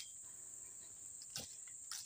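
Insects trilling steadily at a high, even pitch, with a couple of faint short thuds about one and a half seconds in and near the end.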